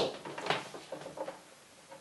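Handling noise: a few light clicks and rustles, fading out over the first second and a half, from handling the camera and the speaker cables.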